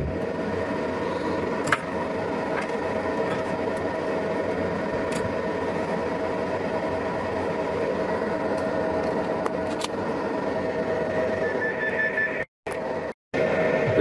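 Steady whir of a bench cooling fan and power supply, with a few faint steady whining tones and an occasional light click. The sound cuts out twice briefly near the end.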